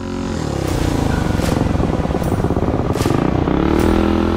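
Minibike engine easing off and then revving back up: its pitch falls through the first couple of seconds and climbs again near the end.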